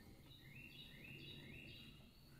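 Faint songbird song: a short, high phrase repeated three times in quick succession, over a low, steady outdoor background rumble.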